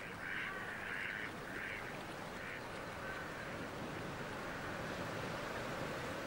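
Water birds giving a series of short nasal calls, roughly two a second, that stop about two and a half seconds in, leaving a faint steady background.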